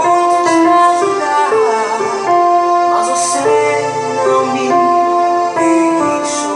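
Electronic keyboard playing a slow ballad in a piano-like voice, sustained chords changing about once a second.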